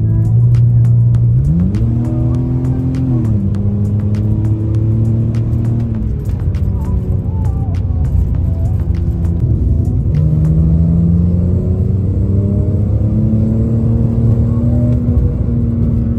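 2001 BMW 330ci's inline-six heard from inside the cabin under hard acceleration: the engine note climbs, drops back at a gear change, then climbs again toward high revs near the end. Background music plays underneath.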